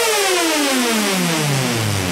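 Electronic dance music in a breakdown: the kick drum drops out and a synthesizer tone slides steadily down in pitch in one long falling sweep.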